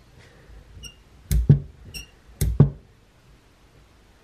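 Handling of a Honda CB550's bank of four carburettors on a cloth-covered workbench: two pairs of dull knocks about a second apart, with two small metallic clinks between them.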